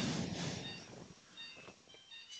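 A few faint, short electronic beeps from the procedure-room equipment, over low room noise.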